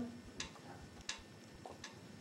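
Three faint, sharp clicks about three-quarters of a second apart over a quiet background.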